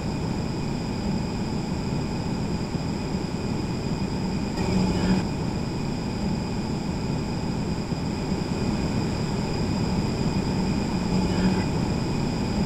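Steady outdoor ambience with machine noise: a constant low drone with several steady whining tones over it. It is background ambience copied onto a track by ambience matching, which widens it to stereo.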